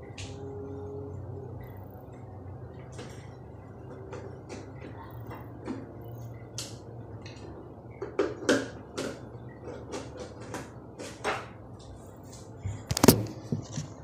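Handling and rummaging noise: scattered knocks and clicks of objects being moved near the microphone over a steady low hum. The knocks come thicker in the second half, and the loudest is a sharp knock about a second before the end.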